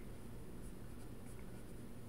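Faint scratching of a pen writing on paper, over a low steady room hum.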